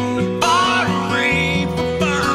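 Background music: a song with strummed acoustic guitar and a voice singing a melody over it.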